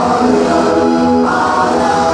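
A group of voices singing a gospel song together in sustained, held notes.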